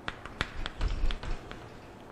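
Chalk writing on a blackboard: a quick, irregular run of light taps as the chalk strikes the board letter by letter, most of them in the first second and a half.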